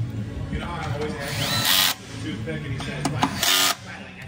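A power tool running in two short bursts, the first about a second in with a rising whine as it spins up, the second shorter near the end.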